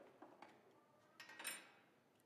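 Faint metallic clinks of a metal lid lifter touching the cast-iron top of a wood cook stove: a few light clicks, then a brief, louder clatter with a ringing edge about one and a half seconds in.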